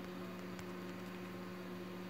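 Faint steady electrical hum over light hiss: room tone.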